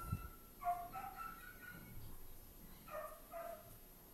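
Faint high-pitched animal calls in two short bouts, one about half a second in and another about three seconds in, over quiet room tone.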